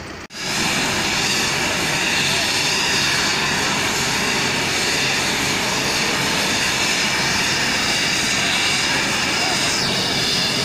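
Turbine helicopter running on the ground, its engine and rotor noise loud and steady. The sound cuts in abruptly just after a short dropout at the start.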